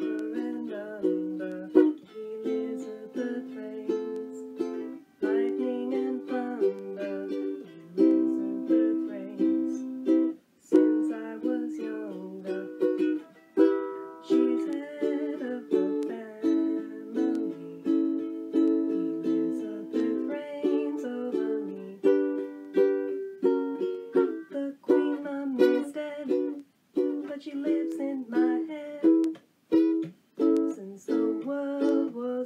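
Ukulele strummed in a steady rhythm, playing a song's chords with short breaks between phrases.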